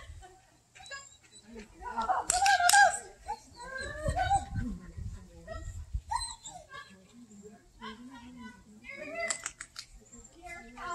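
A handler's voice calling out to her dog, the words indistinct, loudest about two to three seconds in.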